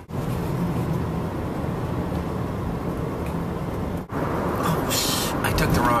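Steady low road and engine rumble inside a moving van's cabin, with a brief higher hiss about five seconds in. The sound drops out for a moment near the start and again about four seconds in.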